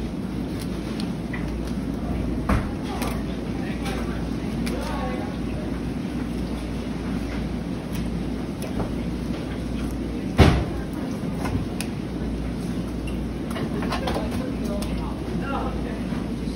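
Steady low hum of background machinery with faint voices in the distance, and two sharp knocks on the cutting table as a haddock is filleted by knife, the louder one about ten seconds in.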